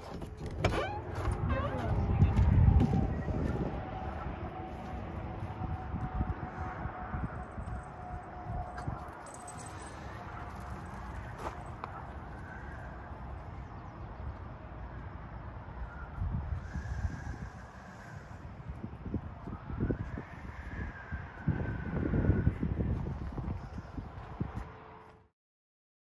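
Metal trailer door latch clicking open, then outdoor campground ambience: a steady faint hum of highway traffic, with low rumbling gusts of wind on the microphone a couple of seconds in and again near the end. The sound cuts off abruptly just before the end.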